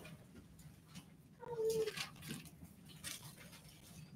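Faint rustling of Bible pages being turned, with a short, steady, high-pitched squeak about one and a half seconds in.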